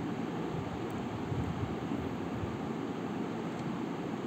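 Steady background noise, an even hiss with a low rumble, with no distinct event.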